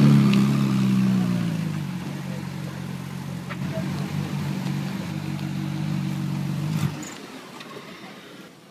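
Ferrari 458 Spider's V8 engine, loudest at the start as the car passes close, then dropping in pitch and running steadily at low speed as it rolls through the lot; the engine sound cuts off about seven seconds in.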